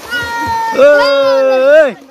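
A young person's voice calling out in two long, drawn-out cries. The first is shorter and higher; the second is louder and lower, holds steady for about a second, and rises in pitch just before it cuts off.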